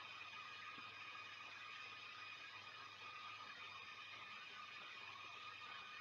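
Near silence: faint, steady background hiss (room tone) with a few thin, unchanging tones and no distinct events.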